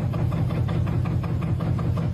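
Steady low hum of gold-recovery machinery running, with a faint, fast rattle over it.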